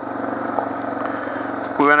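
Suzuki DR650's single-cylinder four-stroke engine running steadily at a constant light throttle as the bike rides along a gravel trail. A man's voice starts talking near the end.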